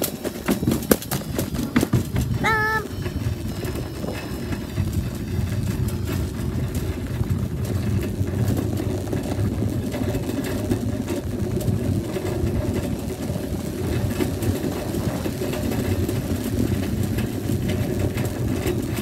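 Wire shopping cart being pushed over parking-lot pavement: a steady rumble and rattle of its wheels and basket, with a few sharp knocks in the first couple of seconds and a brief pitched sound about two and a half seconds in.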